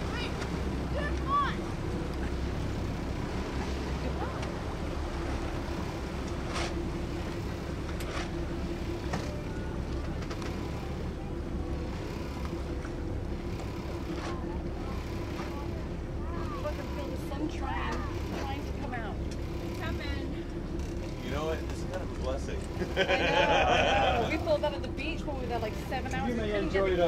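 A motorboat's engine drones steadily under wind and water noise. Voices break in near the end.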